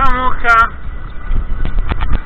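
Vehicle rolling slowly along a gravel road, heard from inside: a steady low rumble with a few sharp knocks near the end. Two short vocal exclamations come right at the start.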